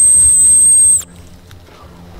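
One long, loud, very high-pitched whistle blast held at a steady pitch, cutting off sharply about a second in. It is blown as a call to get the coyotes to answer.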